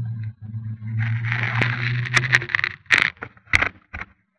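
Electric RC helicopter (E-flite Blade 400 3D) running with a steady low hum, a rushing noise joining it about a second in. The hum stops about two and a half seconds in, followed by four sharp knocks.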